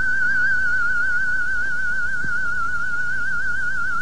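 A single sustained electronic tone with a theremin-like quality, high and wavering with a quick, even vibrato, sinking slightly in pitch as it holds.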